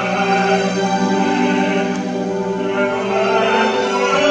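Recorded opera performance: a male singer holding a long note over orchestral accompaniment.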